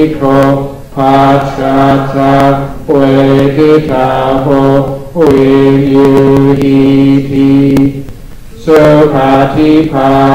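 Buddhist chanting in Pali: a man's voice through a microphone recites in long phrases held on a nearly level pitch, with short breath pauses between phrases and a longer pause near the end.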